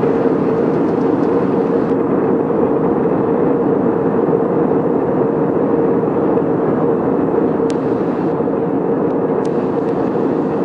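Airbus A320 cabin noise in flight, heard from a window seat over the wing: a steady roar of airflow and CFM56-5B4 engines with a constant droning tone in it. There are a couple of faint ticks near the end.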